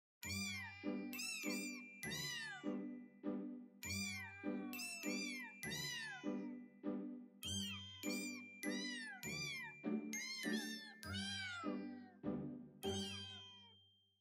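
A short tune played with cat meows: a steady run of meow calls pitched to different notes, each landing on a beat with sustained tones and low bass notes beneath. It stops just before the narration begins.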